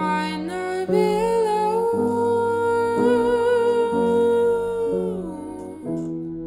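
A woman's voice humming a long wordless note over soft piano chords struck about once a second. The note rises at the start, holds steady, and falls away near the end.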